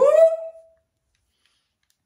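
A woman's short high-pitched vocal exclamation that swoops up sharply and holds for about half a second, then breaks off into silence.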